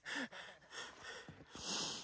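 A person breathing hard close to the microphone: about three hissing breaths, roughly a second apart.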